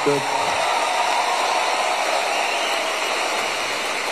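Audience applauding, a steady, even clapping that fills the hall.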